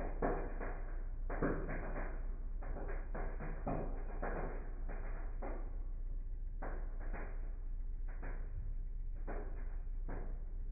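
Microwave oven running with CDs arcing inside, the sound slowed about eightfold: the arc crackles are stretched into irregular, dull bursts, a dozen or so across the stretch, over a steady low hum.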